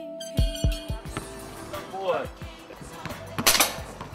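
A hip-hop beat with drum hits plays for about the first second, then stops, leaving background voices. About three and a half seconds in comes a single sharp shot from a gun being fired at a target.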